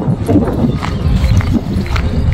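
Footsteps of someone walking on a path, knocking about twice a second over a steady low rumble.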